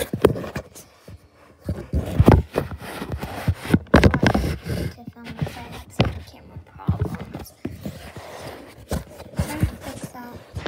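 Thumps of hands and feet landing on a floor mat and clothing brushing close to the microphone as a person practises cartwheels. The loudest thumps come about two and four seconds in.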